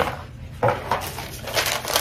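A cardboard wig box being opened and handled: a few short scrapes and rustles of the lid and packaging.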